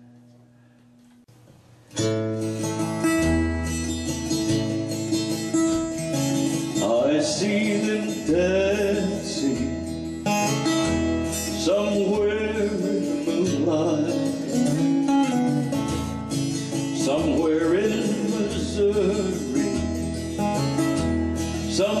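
After a quiet lull of about two seconds, an acoustic guitar comes in suddenly, strumming and picking a song intro over a steady bass pattern. A man's voice then sings a melody over the guitar from about seven seconds in.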